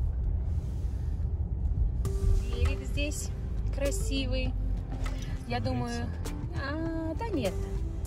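Steady low rumble of road and engine noise inside a moving car's cabin. Quiet, indistinct voices come in from about two seconds in.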